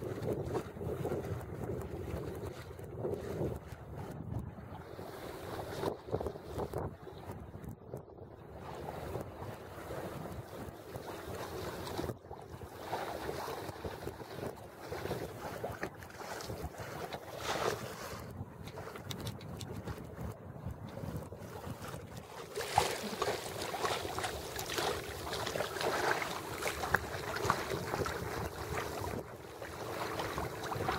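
Wind rushing over the microphone and water washing along the hull of a small sailboat under sail in a light breeze, louder and hissier about three quarters of the way through.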